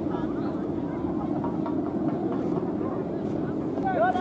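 Steady low rushing noise, typical of wind on the microphone in an open field, with crowd voices underneath and a shout near the end.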